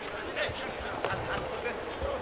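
Faint stadium ambience from the pitch microphones: a low steady background noise with distant voices calling out now and then.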